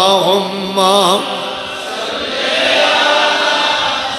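A man singing an Urdu naat without instruments, holding a long note with wide vibrato that ends about a second in. After it comes a softer stretch of blurred, overlapping voices.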